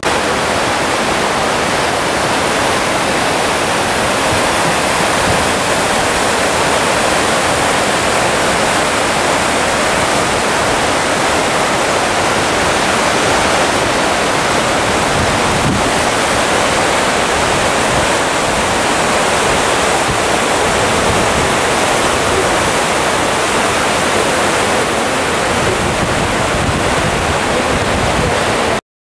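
Fast mountain stream rushing over boulders: a loud, steady rush of white water that starts suddenly.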